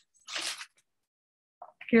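A single short crunch of paper being handled, lasting about a third of a second.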